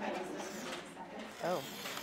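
Cutter head of a paper trim-and-score board sliding along its rail, its blade slicing through a sheet of cardstock with a scratchy rasp. A short spoken 'Oh' comes near the end.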